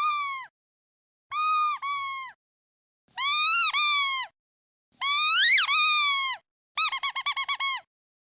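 Rubber duck squeaky toy being squeezed again and again. Several drawn-out squeaks come with silent gaps between them, one rising and then falling in pitch, followed near the end by a quick run of about seven short squeaks.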